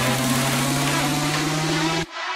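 Big room house build-up: a dense rushing noise riser over a held low synth tone that slowly climbs in pitch, with fast pulsing underneath. It stops abruptly at the end, just before the drop.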